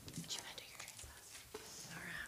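A quiet pause in a congregation: faint rustles and small clicks, with a soft whispered voice near the end.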